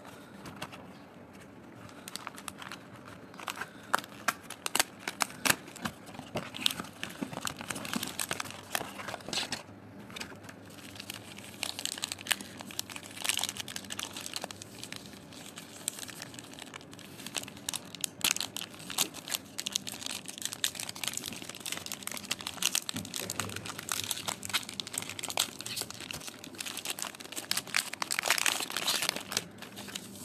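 Chocolate packaging of a Cadbury Dairy Milk Silk Heart Blush bar crinkling as hands open its gift box and handle the bar's wrapper: irregular crackles and sharp clicks that come in louder spells.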